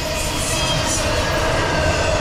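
Double-stack intermodal freight cars rolling past at close range: a steady rumble of steel wheels on rail, with a faint, thin steady whine above it.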